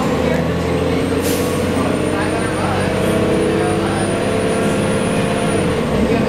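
Cabin sound of a 1990 Gillig Phantom transit bus under way: the Cummins L-10 inline-six diesel drones steadily, with a thin high whine that dies away near the end and a short hiss of air about a second in.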